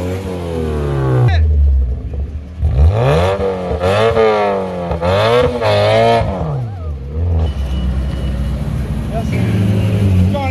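A car engine revved hard several times in quick succession, the pitch climbing and dropping with each blip, after a shorter rising rev at the start. Other engines idle steadily underneath.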